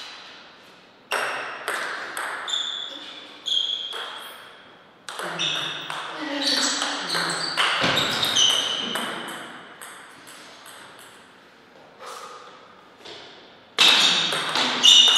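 Plastic table tennis ball clicking off rackets and the table, each hit ringing briefly. There are a few spaced single hits at first, then a fast run of hits in a rally from about five seconds in, and more loud hits near the end.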